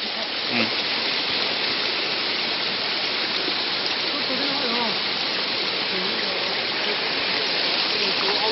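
Shallow stream rushing steadily over rocks: a constant, even water noise.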